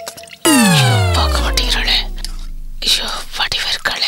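A comic descending-pitch sound effect: a tone starts suddenly about half a second in and slides steadily down from a high pitch to a deep low over about two seconds before fading, with whispery voices around it.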